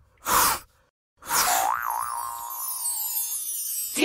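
Cartoon intro sound effects: a short swish, then a springy boing that wobbles in pitch under a falling, glittery sparkle sweep, ringing on for a couple of seconds.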